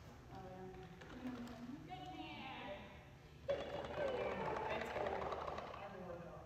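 Indistinct voices talking, growing suddenly louder and busier about three and a half seconds in.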